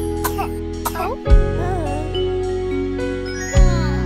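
Gentle instrumental children's-song music: held bass notes under chiming bell-like notes, with a soft low drum hit about every two seconds.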